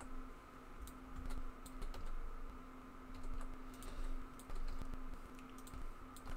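Computer keyboard keystrokes and clicks, faint and irregular, as Blender shortcuts are pressed to extrude and scale mesh loops, over a faint steady hum.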